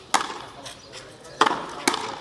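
Frontenis rally: a rubber ball struck by strung racquets and rebounding off the frontón wall, giving three sharp hits with a short echo, the last two close together near the end.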